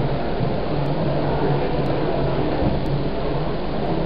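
Steady hiss of classroom room noise with a faint low hum and no distinct strokes.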